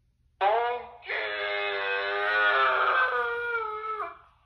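Talking Ben plush dog toy giving a drawn-out wordless vocal sound in its low voice: a short call about half a second in, then a long held call whose pitch slowly falls.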